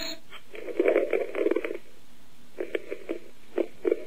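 A person laughing over a telephone line: a stretch of held-in, pulsing laughter, then a few short bursts.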